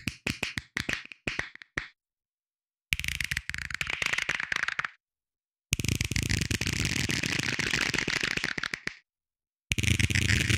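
Close-miked clicks from the performer's hands, put through live electronic processing. A fast run of sharp clicks fills the first two seconds, then come two long bursts of dense crackling noise, each stopping dead into silence, and a third burst begins near the end.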